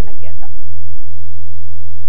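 Loud, steady low electrical hum, with a faint steady high whine above it; a spoken word trails off about half a second in.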